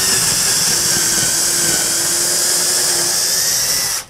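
Cordless drill running steadily at full speed, boring a pilot hole for a lag bolt into a pine-paneled wall; the motor cuts off suddenly at the very end.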